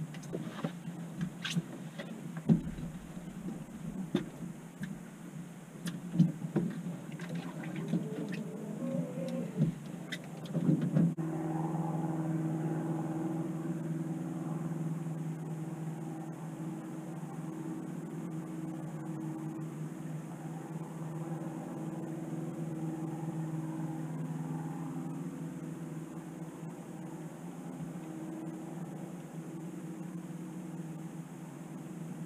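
Scattered knocks and clatter on a fishing boat for about the first eleven seconds, then a boat motor comes in with a steady hum and keeps running.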